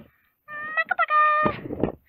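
Wooden pull-along toys dragged by their strings over a wooden floor: a high, steady squeak in two stretches, the second louder, followed by a few knocks.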